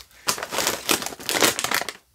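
Doritos chip bag crinkling as it is handled and moved, an irregular run of crackles.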